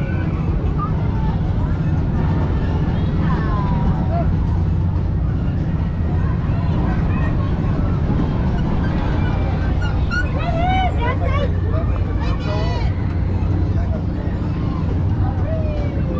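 A steady low machinery drone runs under a fair crowd's babble, with scattered high children's voices and calls.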